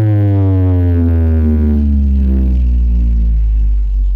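Parade sound-system truck playing a long, deep electronic bass note that sinks slowly and steadily in pitch over about four seconds.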